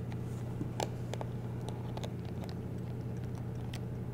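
Small screwdriver working the back screws of a handheld plastic gas detector loose: scattered faint clicks and ticks of metal on screw heads and plastic housing, over a steady low hum.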